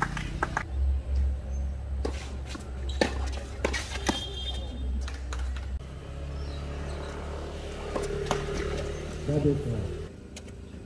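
Tennis ball struck by rackets and bouncing on a hard court during a doubles rally: sharp pops, a run of them about half a second apart between two and four seconds in and a few more near the end. A low steady rumble lies under the first half, and a short voice calls out just before the end.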